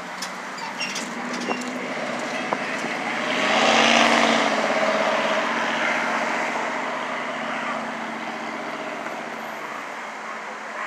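Road traffic passing close by, a car's tyre and engine noise swelling to a peak about four seconds in and then fading as it goes past.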